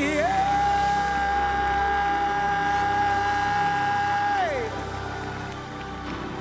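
Gospel worship music: a singer holds one long high note for about four seconds, sliding up into it and dropping away at the end, over sustained keyboard chords.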